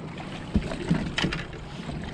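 Wind rumbling on the microphone, with two or three small knocks and clicks about half a second and just over a second in, from handling the catch in a kayak.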